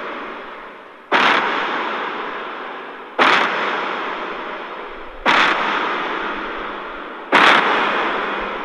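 Sound effect of giant footsteps: four heavy booms about two seconds apart, each starting suddenly and fading slowly until the next.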